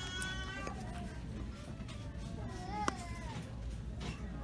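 A small child's high-pitched, drawn-out calls in a shop: one held call fades out early on, and another wavers up and down near the end of the third second, over steady store background noise.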